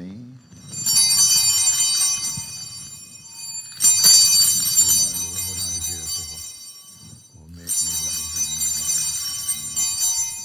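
Hand-held altar bells (sanctus bells) rung three times, about a second in, about four seconds in and near the end, each ring a bright jangle of high tones that fades away. They mark the elevation of the chalice after the words of consecration.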